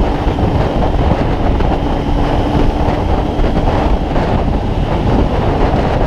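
Motorcycle cruising on the open road: wind rushing over the microphone with the engine running steadily beneath it, a faint even hum held through the middle.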